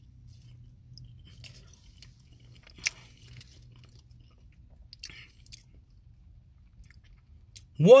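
A man chewing a mouthful of breaded boneless chicken wing with his mouth closed: soft, scattered wet mouth clicks, one sharper click about three seconds in, over a low steady hum.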